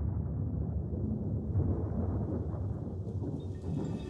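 Steady low rumble of thunder with rain, a recorded storm effect opening a song, with the song's music starting to come in at the very end.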